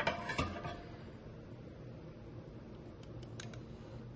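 Thick cheese sauce being spread across the bottom of a glass casserole dish: soft handling noise with a light knock about half a second in, then quiet, with a couple of faint clicks near the end.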